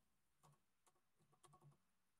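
Faint computer keyboard typing: a few scattered keystrokes, then a quick cluster of them near the end.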